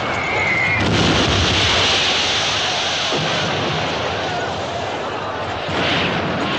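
Artillery shell exploding in a battle soundtrack: a sudden blast about a second in, followed by a long rushing roar, and another blast near the end.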